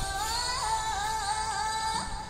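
A woman singing a Telugu folk song, her voice holding long notes that slide up and down.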